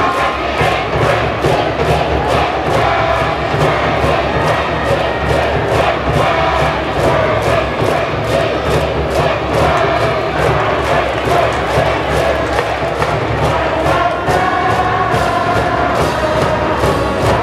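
A school baseball cheering section performing a cheer song: a brass band plays the tune while a massed crowd of students chants along, over a steady beat of about two to three strokes a second.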